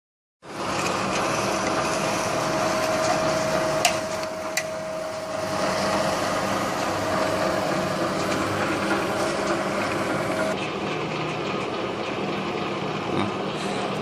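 Electric lock forming machine running, its rollers forming a galvanized steel strip into a seam profile: a steady machine drone with a whining tone that stops about ten seconds in. Two sharp clicks about four seconds in.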